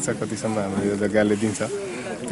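A man speaking, continuous speech only.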